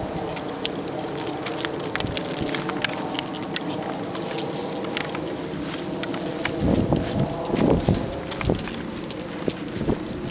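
Pet stroller's plastic wheels rolling over pavement: a steady rumble with many small clicks and rattles from the wheels and frame. A few louder low bumps come about seven to eight seconds in.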